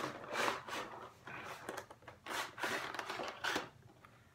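A boxed toy diecast car's packaging being worked open by hand: irregular rustling, scraping and tearing noises.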